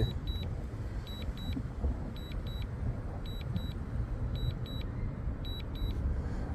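Drone remote controller beeping in short high double beeps about once a second: the alert during the DJI Mavic Air 2's return-to-home under a strong-wind warning. Under it runs a steady low rumble.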